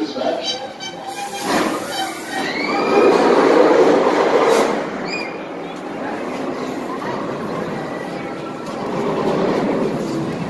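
Steel shuttle-loop roller coaster train running along its track, the rush swelling to its loudest about three to five seconds in, with a few high rising-and-falling tones near its peak, then settling to a steadier rumble.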